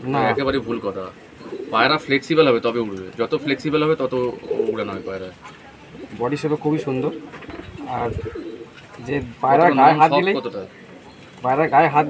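Domestic pigeons cooing repeatedly, with wavering calls that come and go every second or so.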